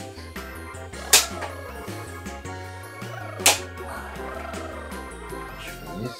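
Background music with a steady beat, cut by two sharp, loud plastic snaps, the first about a second in and the second a couple of seconds later: the clips of a pedestal fan's rear grille being pressed home onto the motor housing.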